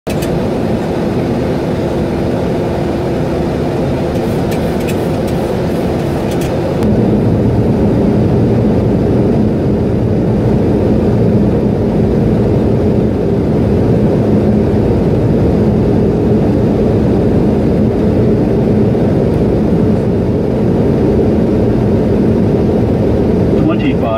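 Steady rumble of an airliner's engines and airflow heard from inside the passenger cabin; about seven seconds in it grows a little louder and deeper.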